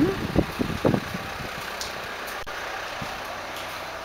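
A few dull low thumps in the first second, then a steady, fairly quiet background rumble and hiss.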